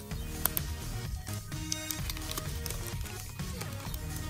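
Background music with steady held notes over a low bass. A few short crinkles come from a foil booster-card pack being worked open.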